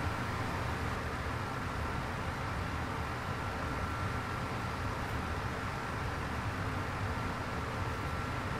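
Steady background noise with a faint, even high whine, with no distinct events.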